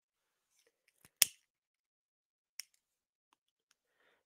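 A sharp click about a second in, followed by a fainter click a second and a half later, with near silence around them.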